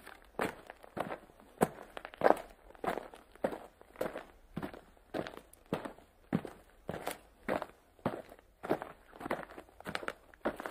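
Footsteps of a person walking at a steady pace, a little under two steps a second.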